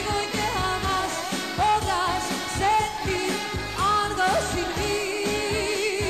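Pop song performed live: a woman singing long, sliding notes with vibrato over band backing with a steady beat.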